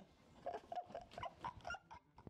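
A person making a quick run of short, high-pitched vocal squeaks, with no words.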